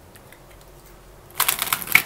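A deck of tarot cards being shuffled by hand: quiet at first, then a quick run of crisp card clicks starting about a second and a half in.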